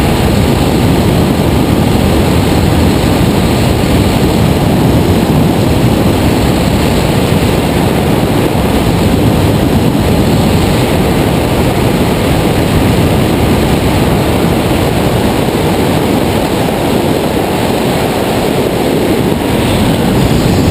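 Steady, loud wind rushing and buffeting over the microphone of a camera mounted on a hang glider's wing in flight.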